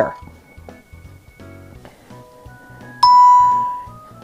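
A single electronic ding from the ProStitcher quilting computer about three seconds in, sounding as a traced point is recorded, and fading over about a second. Before it there are only a few faint tones.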